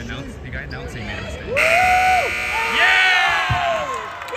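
A gym's scoreboard buzzer sounds loudly about a second and a half in and holds for about two seconds. Spectators shout and cheer over it.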